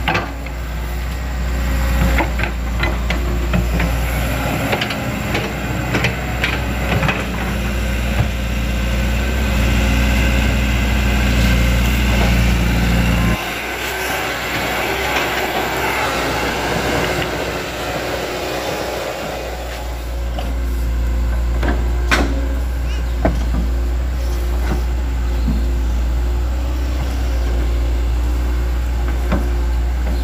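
Hitachi Zaxis hydraulic excavator's diesel engine running steadily under load while it digs and dumps mud, with scattered metallic knocks and clanks from the bucket and steel tracks. The engine drone drops away abruptly a little before halfway and comes back several seconds later.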